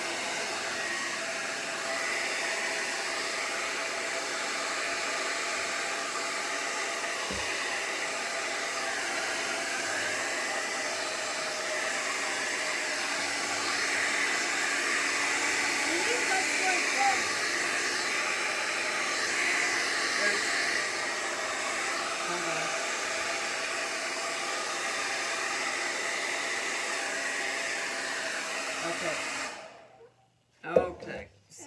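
Handheld hair dryer running steadily, blowing air onto wet acrylic paint on a board. It switches off just before the end.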